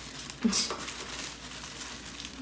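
Tissue paper crinkling as it is folded by hand around a small parcel, with a brief louder rustle about half a second in.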